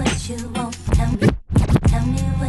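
Hip-hop record played on turntables through a DJ mixer, with vinyl scratching over the beat. The sound cuts out very briefly about one and a half seconds in, as with a crossfader cut.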